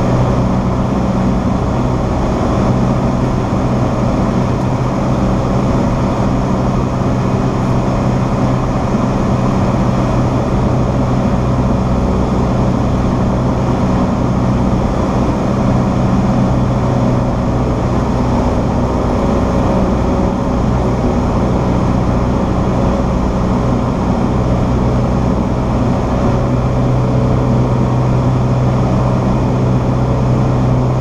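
Cessna 172SP's four-cylinder Lycoming engine and propeller running steadily in flight, a constant loud drone heard inside the cockpit.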